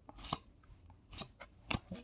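Glossy 2020-21 Upper Deck Extended hockey trading cards being flipped through by hand: a few faint, short card flicks and slides, two coming close together near the end.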